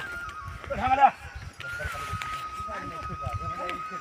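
Men's voices calling out while driving a pair of bullocks at the plough: one loud call about a second in, then quieter calls and talk. A thin, steady high-pitched tone runs underneath.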